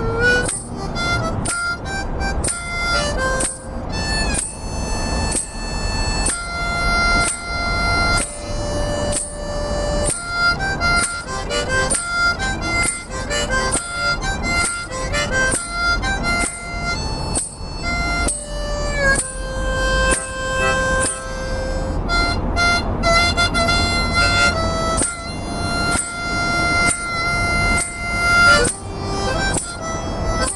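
Harmonica played solo: a melody of held notes alternating with quick rhythmic passages, played without a break.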